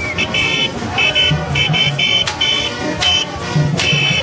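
Haitian rara band playing in a street procession: high horns sound short blasts in a quick, repeating rhythm over low, pulsing notes, with a few sharp percussive hits.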